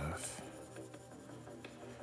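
Stylus tip stroking softly across a tablet's glass screen, faint, with quiet background music underneath.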